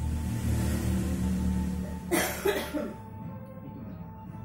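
A person coughing twice in quick succession about two seconds in, over a steady low background.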